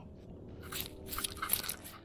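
Gravel and sand crunching and scraping against a half-buried glass bottle as a finger pushes and wiggles it. The bottle is stuck fast in the packed sandbar. A quick run of short crunches starts about half a second in and lasts until near the end.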